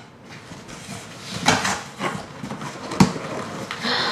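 Cardboard shipping box being cut open and its flaps pulled apart: scattered scraping and rustling of cardboard, with a sharp click about three seconds in.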